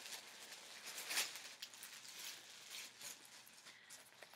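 Faint rustling and light handling noises from packaging and items being moved around inside an opened subscription box, with a slightly louder rustle about a second in.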